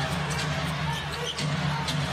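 A basketball being dribbled on a hardwood court during live play, over arena crowd noise and a steady low hum.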